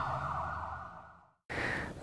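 The tail of a TV news programme's intro theme music fading out and cutting off about a second and a quarter in. A brief gap of silence follows, then faint studio room noise.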